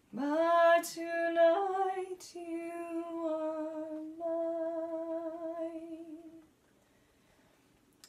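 A woman singing a lullaby a cappella in slow, long-held notes. The singing stops about six and a half seconds in.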